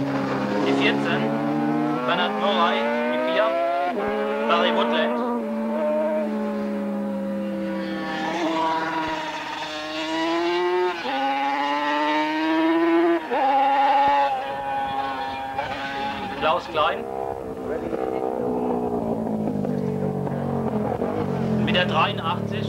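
Racing motorcycle engines running at high revs as bikes pass one after another. The engine note climbs and then drops sharply several times.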